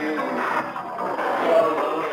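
Music carried on a shortwave radio broadcast, received off the air with the thin, narrow sound of AM shortwave reception.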